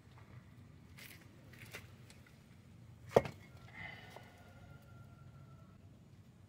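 Light clicks, then one sharp knock about three seconds in as the steel brake rotor and hub is handled and turned over on its wooden block, followed by a faint ringing tone for a couple of seconds.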